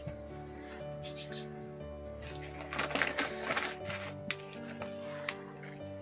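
Soft background music of long sustained notes, with light crackling and clicks of packets and a plastic bag being handled in the middle.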